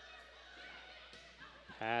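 Faint sports-hall background with a couple of soft knocks, the volleyball being struck as it is passed and played during a rally.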